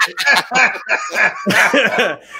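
People laughing hard: a loud run of short, choppy laughing syllables, one after another.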